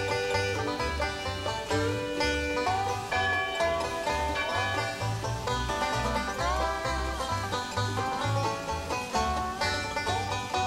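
Bluegrass instrumental led by banjo, with a steady bass note about twice a second and a few sliding notes partway through.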